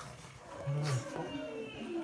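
A Labrador and a pug growling while play-fighting: a loud, low growl about half a second in, followed by softer growling noises.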